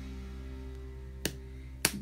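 Two sharp clicks, one about a second in and one near the end, from a small makeup item being handled. Underneath runs a steady low hum with faint held tones.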